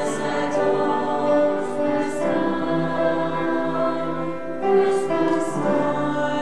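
Mixed choir of men and women singing in parts, with long held chords and short crisp 's' sounds on the words.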